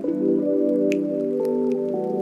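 Mellow lofi background music with soft sustained chords that change about a second and a half in, and a few short, high water-drop-like plinks.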